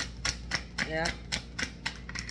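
A deck of tarot cards being shuffled by hand, overhand style: the cards slap together in a quick, even series of sharp clicks, about three to four a second.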